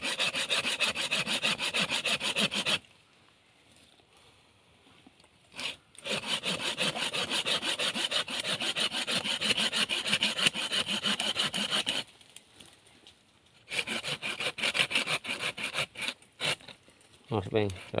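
Folding hand pruning saw cutting into living wood at the base of a small tree, in quick, even back-and-forth rasping strokes. The sawing comes in three runs, stopping for about three seconds after the first and for a second or two after the second.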